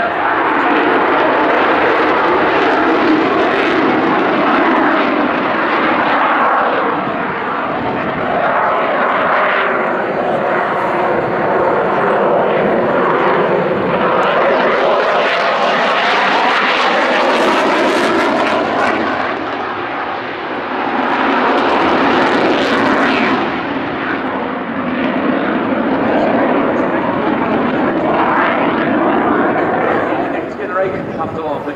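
Saab JAS 39C Gripen's single Volvo RM12 turbofan at high power through display manoeuvres: loud, continuous jet noise with a sweeping, phasing quality as the jet's distance changes. The hiss swells twice, around the middle and again a few seconds later, with a brief dip between.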